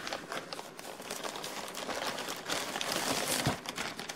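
A sealed clear plastic toy bag crinkling and rustling as it is handled, a dense run of small crackles.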